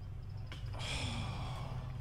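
A person's long breathy gasp, starting about three-quarters of a second in and lasting over a second, over a low steady hum.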